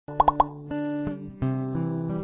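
Animated logo intro: three quick cartoon pops in a row, then a music jingle of held chords that change every third of a second or so.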